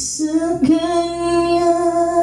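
A woman singing karaoke into a microphone over a backing track, holding one long, steady note after a brief break at the start.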